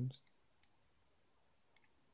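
Computer mouse clicking: a single click a little over half a second in, then a quick double click near the end, paging a photo viewer on to the next picture. The end of a spoken word fades out at the very start.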